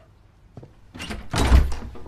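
A hotel room door being opened: a light click about half a second in, then the handle and latch turning and the door pulled open, with a dull thump at its loudest about one and a half seconds in.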